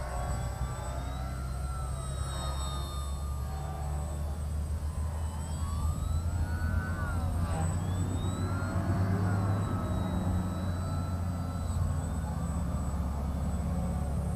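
Electric motor and propeller of a small foam RC biplane whining in flight, its pitch repeatedly rising and falling as the throttle changes and the plane passes by, over a steady low rumble.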